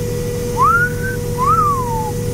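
A person whistling a two-note wolf whistle, a rising note and then a rise-and-fall, in admiration. Under it runs the steady hum and whine of the combine, heard inside its cab.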